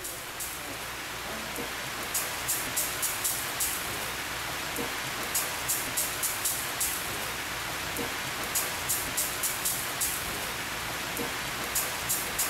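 Greenhouse overhead spray nozzles misting water onto rice seedling trays: a steady rain-like hiss of spray and water pattering. Short sharp ticks come through it at uneven intervals, more often in the second half.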